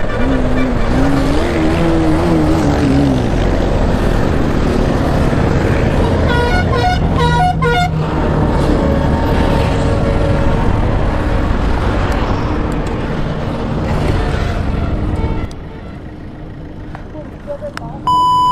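Motorcycle engine and wind noise while riding in traffic, the engine note rising and falling in the first few seconds. A vehicle horn honks for about a second and a half, about six seconds in. The riding noise drops sharply near the end as the bike pulls over and stops.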